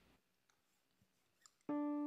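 Near silence with a few faint clicks, then about a second and a half in a Nord Electro stage keyboard starts a held chord in an electric-piano sound, opening the song.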